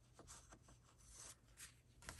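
Near silence with a few faint rustles of a sheet of paper being handled and laid down on a work surface.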